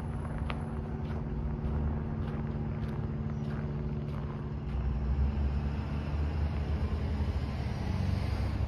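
Footsteps crunching on a packed-snow sidewalk, about two steps a second, over a steady low motor hum of a road vehicle. A low rumble grows louder about five seconds in.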